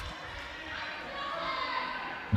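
Faint handball game sounds in an echoing sports hall: distant players' and spectators' voices, with a handball bouncing on the court.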